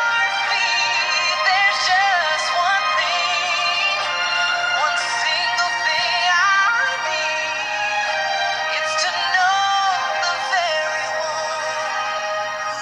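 A song playing: a solo voice sings slow, long-held notes with vibrato over a steady accompaniment.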